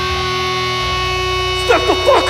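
Live hardcore band holding a sustained, ringing chord on amplified guitars with the drums dropped out. A shouted vocal comes in over it near the end.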